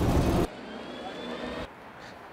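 City transit bus running at a stop. Its engine and road noise are loud for the first half-second, then fainter, with a faint high whine rising slowly. The sound drops away about one and a half seconds in.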